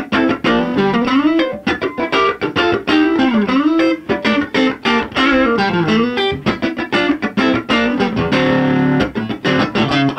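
A 1961 Fender Stratocaster on its neck pickup, played clean through a 1964 Vox AC-10 amp: a funk riff of short, choppy notes and muted strums, with sliding notes running up and down.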